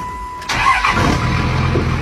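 A short steady beep, then a vehicle engine starting: a burst of noise as it turns over, and from about a second in the engine running steadily at a low pitch.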